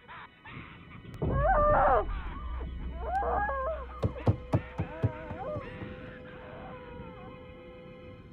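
Horror film soundtrack: a deep rumble comes in just over a second in, under wavering high-pitched wails that come twice. About halfway through, four sharp knocks follow, and a steady held tone lingers until near the end.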